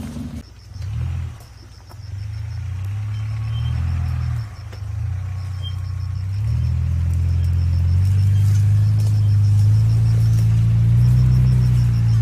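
A small 4x4 off-roader's engine working at low speed through brush, its note shifting up and down in the first half, then rising and running louder and steadier from about halfway on.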